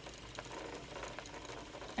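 Spinning wheel turning while a fine lace-weight single is spun: a faint steady whir with a few soft ticks.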